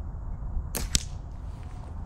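A slingshot shot, loosed from a paper-clip release: one short, sharp snap of the rubber bands about a second in.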